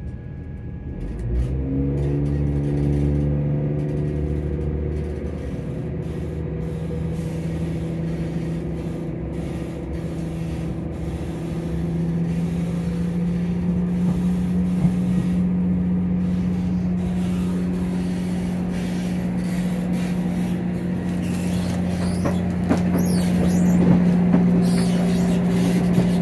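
Class 170 Turbostar's underfloor MTU six-cylinder diesel engine revving up about a second and a half in as the train pulls away, then running steadily under power, its pitch slowly rising as it gathers speed, heard from inside the carriage. A few sharp clicks near the end.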